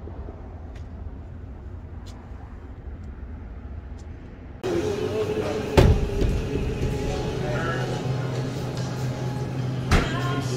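Low outdoor rumble with a few faint clicks, then a sudden change to indoor restaurant ambience with a steady hum. A sharp knock comes about six seconds in and another near the end.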